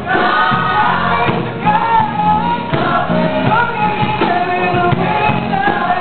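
Gospel choir singing in harmony, holding long notes that change about every second.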